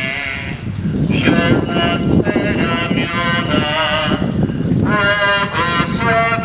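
Voices singing a slow Passion hymn, with long held notes and a wavering vibrato.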